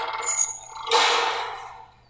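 Soundtrack of a TV drama episode: a sudden noisy sound effect about a second in that fades away over most of a second.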